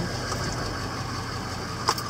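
Vehicle engine and tyres on a rough dirt track, heard from inside the cab as a steady low hum. One sharp knock sounds near the end.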